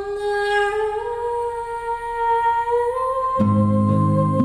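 A female voice sings long, held notes a cappella, stepping upward in pitch. About three and a half seconds in, a low instrumental backing of sustained chords comes in under the voice.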